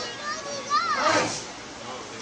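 Children's high-pitched voices calling out among an audience, with the loudest call about a second in.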